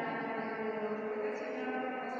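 Voices intoning rosary prayers in a slow chant, with drawn-out pitched syllables.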